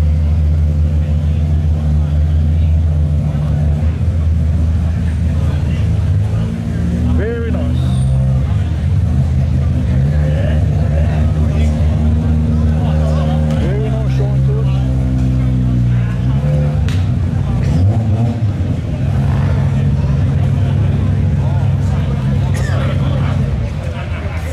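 Ford Falcon XB's engine running, idling with several throttle blips that raise the revs and let them fall back, as the car starts to pull away.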